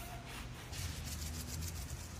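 Dry seasoning shaken from a spice shaker onto raw steak: a fast run of fine, dry ticks starting just under a second in, over a steady low hum.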